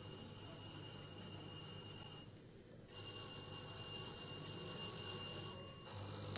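Contestants' quiz bells being test-rung: two steady electronic rings, the first about two seconds long and the second about three, separated by a short gap of under a second.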